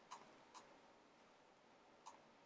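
Two faint mouse clicks about half a second apart over near-silent room tone.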